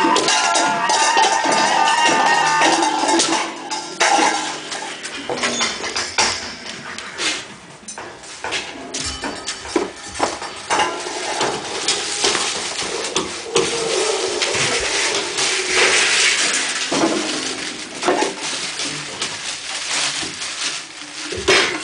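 Free improvised experimental music: dense sustained pitched tones for the first few seconds, then scattered, irregular knocks, clatters and clinks of struck objects with no steady beat.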